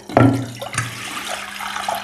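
Water being poured from a jug into a cooking pot for boiling potatoes: a steady, pouring splash that starts abruptly.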